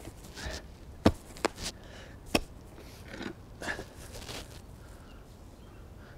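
A spade digging into garden soil: a few sharp knocks of the blade striking into the earth, between short scraping rustles of soil being cut and shifted.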